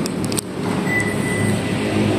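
Toyota Yaris GR Sport locking from its remote key: a few quick clicks from the locks, then the auto-folding side mirrors running with a thin, steady motor whine for about a second, over a low steady hum.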